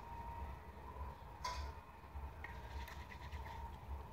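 Quiet room tone with a low steady hum, a short rustle about one and a half seconds in, and a few faint ticks near the end.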